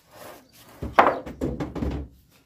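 A wooden frame made of pallet slats laid down flat onto a concrete floor: a loud wooden thunk about a second in, followed by several smaller knocks as it settles.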